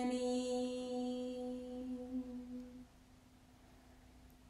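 A single voice chanting a mantra, holding one long steady note that fades out about three seconds in, leaving a short quiet gap.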